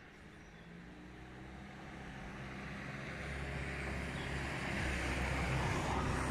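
A motor vehicle's engine approaching, its low steady hum growing gradually louder throughout.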